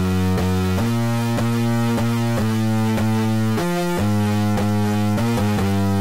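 Drum and bass beat playing back from FL Studio Mobile: a heavily distorted synth bass (GM Synth, Punchy preset, with distortion, chorus and stereo widening) holding long notes that change pitch every second or so, over a kick and percussion pattern.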